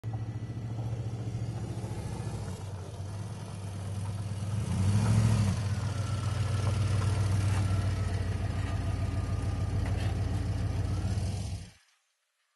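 A vehicle engine running steadily with a low hum, swelling briefly about five seconds in, then cutting off abruptly near the end.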